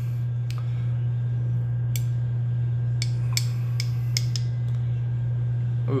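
A steady low hum, with a handful of faint, sharp clicks scattered through it as a glass hot sauce bottle is tipped and handled over a metal spoon.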